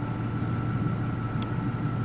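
Steady low mechanical hum, with a faint thin steady tone above it.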